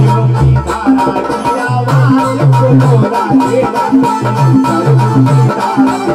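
Live amplified Hindi devotional bhajan: a man's voice singing a winding melody, with harmonium and electronic keyboard playing a repeating low bass pattern and a hand drum keeping a steady beat.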